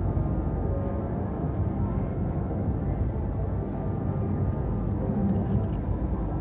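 Casino floor ambience: a steady din from rows of slot machines, with faint electronic machine tunes over it.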